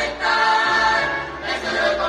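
A carnival humoristas troupe, a mixed chorus of men and women, singing together over music, with long held notes.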